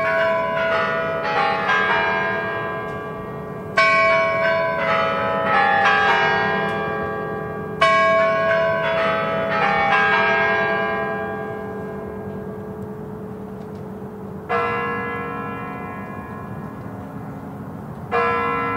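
The Spasskaya Tower clock chimes of the Kremlin play the quarter-chime melody in three ringing phrases of several bell notes, each left to fade. A single deeper bell stroke follows about fourteen seconds in, the first of the hour strikes at twelve o'clock.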